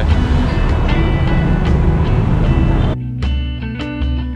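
Busy street traffic noise with music underneath for about three seconds, then it cuts sharply to clean background music of plucked guitar notes.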